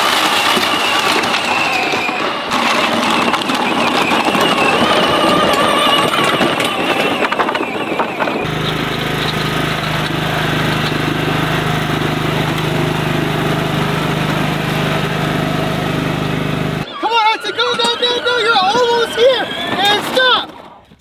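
Riding lawn tractor engine running at a steady speed, starting abruptly about eight seconds in and cutting off abruptly near the end. Before it comes a busier, noisier stretch with wavering higher tones.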